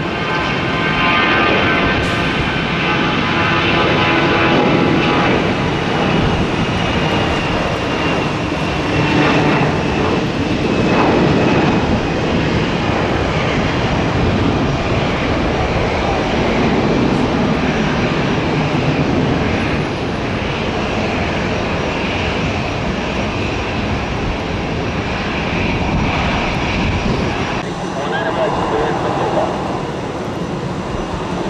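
Jet engines of a twin-engine Airbus A320-family airliner at takeoff power, running loud and steady through the takeoff roll and climb-out, with a whining fan tone. The sound changes abruptly near the end.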